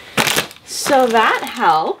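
Plastic vacuum storage bag crinkling as it is handled, followed by a woman's wordless exclaiming voice.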